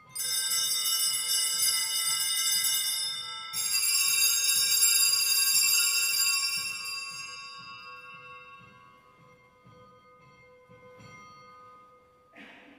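Altar bells, a cluster of small sanctus bells, rung twice, at the start and again about three and a half seconds in, each ring bright and jangling and then fading away over several seconds. They mark the elevation of the chalice just after the consecration.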